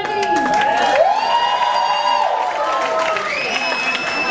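Audience applauding and cheering, with long whoops held a second or more over scattered clapping.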